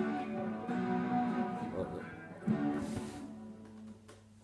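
1973 Gibson SG Special electric guitar playing, a few picked notes and chords ringing out in turn and fading away near the end.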